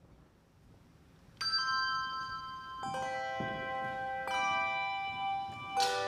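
A handbell choir begins to play. After a short quiet, a chord is struck about every second and a half, four in all, each left ringing into the next.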